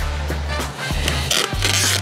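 Background music with a steady bass line. Near the end comes a short rasping tear as clear packing tape is pulled off its roll.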